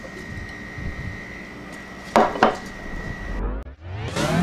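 A glass canning jar packed with cucumber pieces is handled over a wooden board, giving two sharp glassy knocks about a quarter second apart, a little past halfway through. The sound cuts out briefly near the end.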